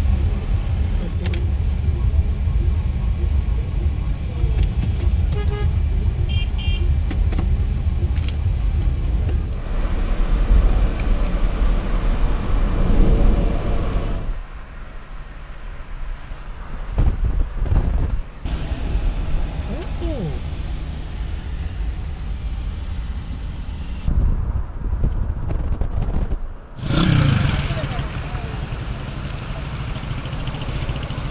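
Street traffic heard from inside a moving car: engine and road noise with motorcycles passing close by. The sound changes abruptly several times.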